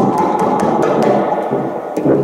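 Free-improvised accordion and tuba music, a dense, noisy cluster of sound, with a run of irregular sharp wooden clicks over it.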